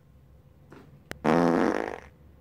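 A raspberry (Bronx cheer) of disapproval: a low buzzing blown through the lips for about half a second, just after a faint click about a second in.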